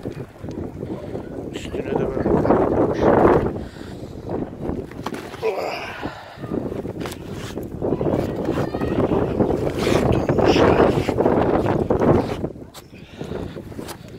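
Wind in a snowstorm buffeting the microphone in gusts, loudest about two seconds in and again from about eight to twelve seconds.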